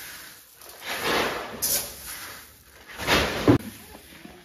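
Wheat kernels scooped with a metal scoop from a galvanized steel grain bin, a rustling hiss of pouring grain that swells twice.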